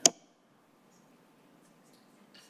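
A single sharp click at the very start, followed by faint room tone.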